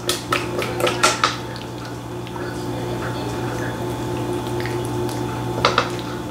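Spatula scraping and knocking against a metal mixing bowl as potato salad is scraped out of it. There is a quick run of clicks and scrapes in the first second or so, softer scraping after that, and a couple more knocks near the end.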